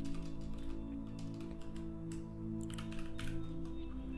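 Computer keyboard typing: scattered key presses and clicks, over soft ambient background music with steady held tones.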